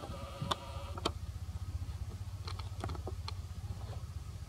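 A handful of light, sharp clicks and taps, irregularly spaced, over a steady low hum. A brief steady pitched tone sounds during the first second.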